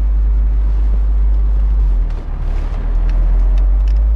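Steady low rumble of wind and road noise inside a moving car, dipping briefly about halfway through.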